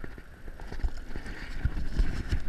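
Low rumble of wind on the microphone over open water, with a few soft knocks about a second in and near the end from hands handling the hooked needlefish and line.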